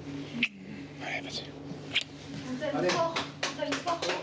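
Low, indistinct voices of two people talking close together over a steady low hum. Two sharp clicks come through, one near the start and one about two seconds in.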